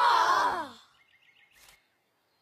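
A breathy, sigh-like vocal exclamation with falling pitch, lasting under a second, followed by a few faint high chirps.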